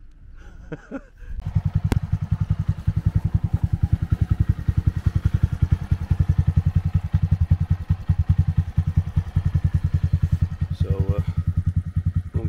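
Honda Monkey 125's single-cylinder four-stroke engine, fitted with an aftermarket silencer, idling with an even, rapid low pulse. It comes in about a second in and holds steady.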